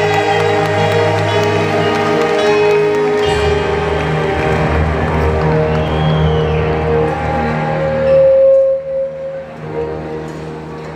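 Live duet of a man and a woman singing with band backing through a hall PA, held sustained notes over a steady bass. The song closes on a long, loud held note about eight seconds in, and the music drops away about a second later.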